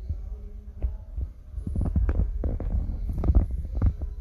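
Low rumble with irregular soft knocks and thumps: handling noise from a hand-held phone.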